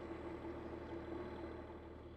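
Pikes Peak Cog Railway train standing at the station with its engine idling: a steady, even hum.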